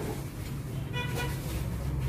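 Steady low traffic rumble with a short vehicle horn toot about a second in.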